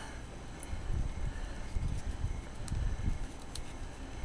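Handling noise from a spiral-bound notebook being held and leafed through close to the microphone: irregular low bumps with a faint paper rustle and a few faint ticks.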